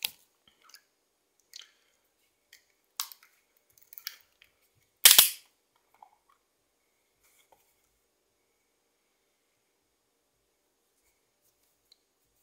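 A glass tea bottle being handled and its metal twist cap unscrewed: scattered light clicks and taps, with one loud sharp snap about five seconds in, then a few faint ticks.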